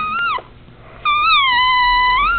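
A high-pitched, whine-like call used as a 'secret call' to bring the dog out. A short wavering call ends about half a second in, and a longer one starts about a second in, dipping in pitch, holding steady, then rising.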